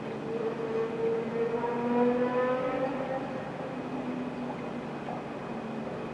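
An engine running in the background, its pitch rising slowly over the first couple of seconds and then fading, over a steady low hum.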